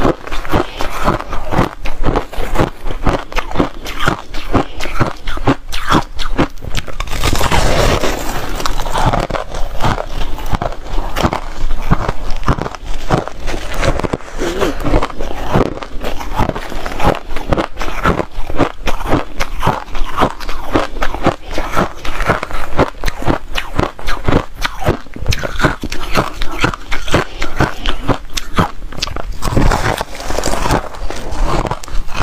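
Shaved ice being bitten and chewed close to the microphone: a dense run of rapid, crisp crunches that goes on throughout, with a thicker, louder stretch about seven seconds in.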